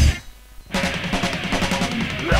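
A punk-metal song breaks off for about half a second, then comes back in with the drum kit leading, playing quicker hits at a lower level.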